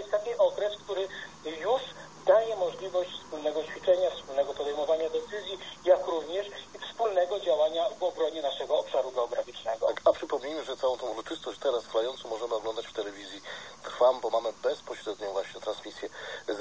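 Speech from a small television's speaker, thin and tinny, one voice talking on without a break.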